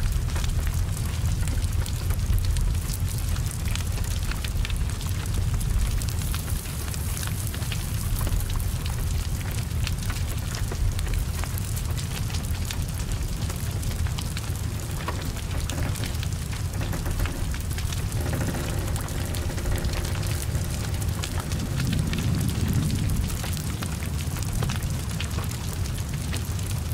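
Heavy rain falling around a burning car. A steady low rumble of flames sits under the even hiss of the rain, with many small sharp crackles and drop ticks scattered throughout.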